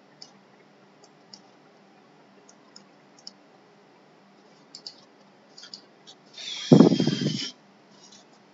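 Computer mouse clicking, a scatter of faint, short clicks, followed near the end by a much louder noisy burst lasting about a second.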